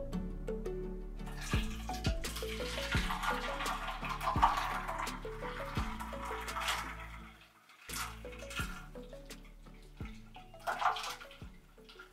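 Hot water poured from a stainless steel kettle in a thin stream, splashing onto a cloth-wrapped doll head over a sink to set the rerooted hair, under light background music with plucked notes. The pouring hiss starts about a second in and fades out a little past halfway, with a shorter splash near the end.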